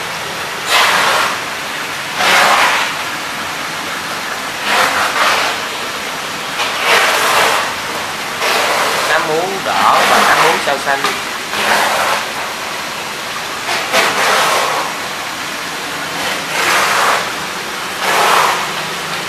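Water rushing and bubbling steadily in an aerated live-fish holding tank, with louder bursts every couple of seconds.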